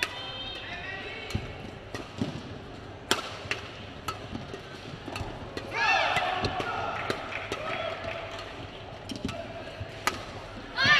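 Badminton doubles rally: sharp racket strikes on the shuttlecock roughly once a second, mixed with high squeaks of court shoes. A loud stretch of sweeping squeals comes about six seconds in, as a player jumps to smash.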